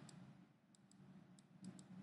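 Near silence with a few faint, light clicks, about five, scattered through the second half, from a stylus tapping and stroking on a writing tablet as an equation is handwritten.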